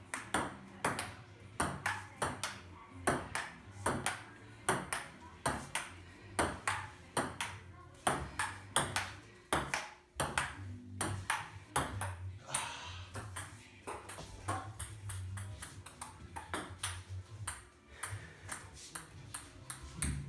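Ping-pong ball knocked back and forth across a table-tennis table, bouncing in a steady rally of light clicks about twice a second.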